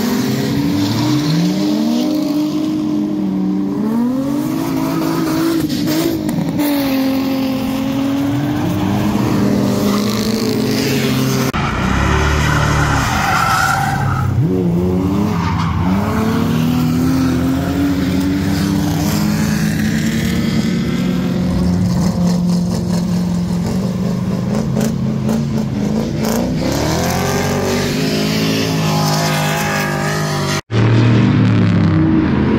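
Drift cars sliding sideways with engines revving up and down again and again and tyres squealing on the asphalt.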